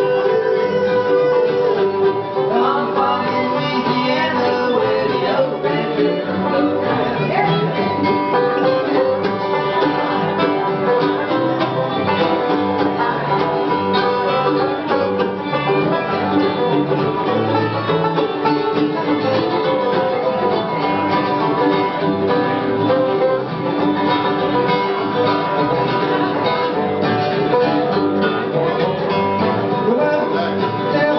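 Acoustic bluegrass band playing an instrumental break without vocals: fiddle, mandolin, acoustic guitar, five-string banjo, lap-played resonator guitar and upright bass, with sliding notes a few seconds in.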